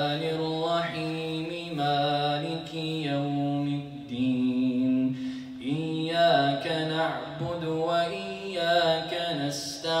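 A man reciting the Qur'an in a melodic, drawn-out chant, holding long ornamented notes. He moves up to a higher held note about four seconds in and comes back down about two seconds later.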